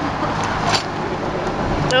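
Steady low rumble of motor-vehicle noise, with one short click about three-quarters of a second in.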